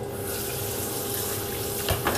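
Kitchen tap running water into a stainless steel sink: a steady hiss that comes on suddenly.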